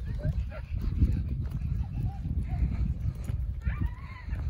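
Low rumbling noise on the microphone, with a few faint, short voice-like calls above it.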